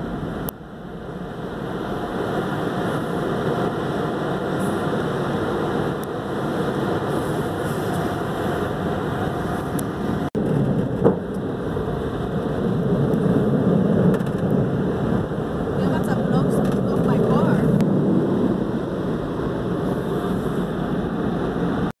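Automatic car wash heard from inside the car: a steady wash of water spray and machinery against the body and windshield. It grows louder for several seconds in the second half, with a brief break about ten seconds in.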